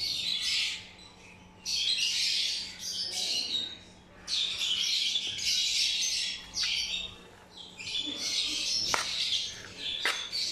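Lovebirds chattering in high-pitched bursts of one to two seconds, four times, with short gaps between. A single sharp tap comes near the end.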